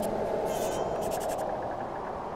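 Quill pen scratching across paper in a few short strokes with small squeaks, over a steady low drone.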